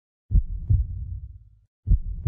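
Deep, low double thumps like a heartbeat sound effect. One pair starts about a third of a second in and another pair comes near the end, each beat trailing off in a short low rumble.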